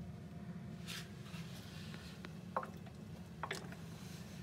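Faint steady low hum with a few soft clicks, about one, two and a half, and three and a half seconds in.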